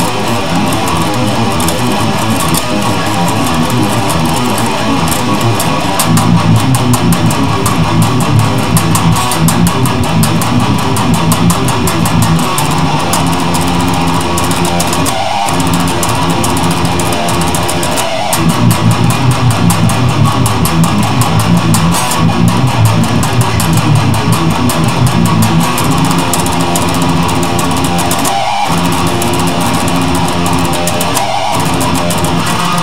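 Electric guitar in standard tuning playing fast heavy metal riffs, with a rapid rhythmic pulse in two long stretches and two brief breaks, about halfway through and near the end.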